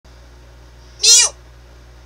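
A single short meow-like call, about a second in, sliding down in pitch.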